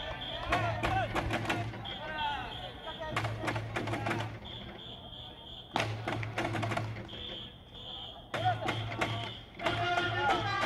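Baseball fans' organised cheering: runs of taiko drum beats with chanting voices, alternating with a steady, high electronic-whistle tone sounded three times, each about a second long.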